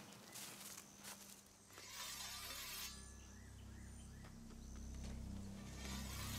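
Faint outdoor ambience: a few soft clicks early, a short hissing scrape about two seconds in, then a low steady drone.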